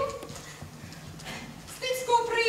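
Footsteps of a performer in boots walking across a stage floor: a few scattered short knocks.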